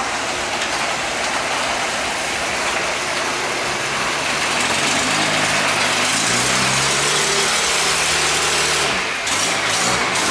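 The 5.9L Cummins inline-six turbo-diesel of a 2006 Dodge Ram shop truck idling while a roll-up garage door runs open, with a pitched tone that rises from about halfway through.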